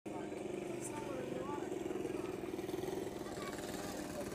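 A motor vehicle engine running steadily with a fast, even pulse, under the voices of a crowd talking.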